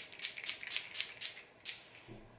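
Tatcha Luminous Dewy Skin Mist setting spray being pumped in a quick series of short hissing sprays, several a second, stopping near the end, as the fine mist is sprayed onto a made-up face from arm's length.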